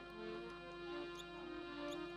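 Soft instrumental music, a harmonium playing steady held notes, with two brief high squeaks about a second in and near the end.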